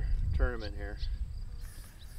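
Insects chirping faintly in a summer field, with uneven wind rumble on the microphone; a short vocal sound about half a second in.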